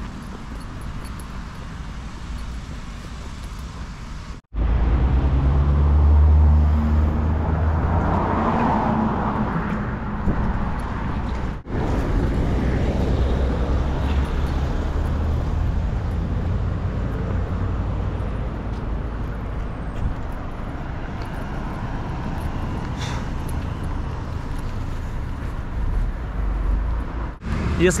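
Cars driving past on a city street: a steady traffic rumble of engines and tyres, louder for a few seconds near the start. The sound breaks off abruptly a few times where shots are cut together.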